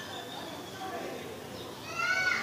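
Faint background voices, with a higher rising call starting near the end.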